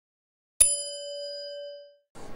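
A single bell-like notification chime, struck once about half a second in and ringing on with several clear tones as it fades away: the sound effect for pressing a bell icon.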